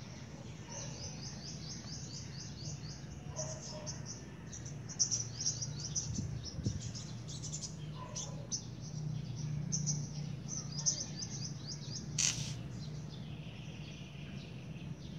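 Small birds chirping in quick runs of short, high notes, over a steady low hum. A short sharp noise comes near the end.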